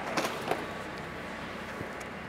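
A couple of light clicks from a manual RV awning's pull strap and awning tool being handled as the awning starts to unroll, over a steady low hiss.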